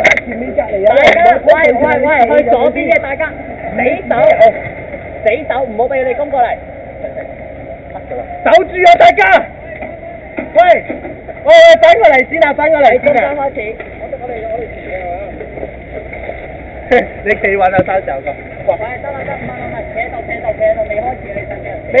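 Indistinct voices of people talking and calling out, with a few sharp clicks partway through.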